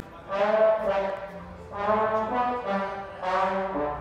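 A band's brass section of trombones and trumpets playing sustained chords in rehearsal, in three swelling phrases with short gaps between them.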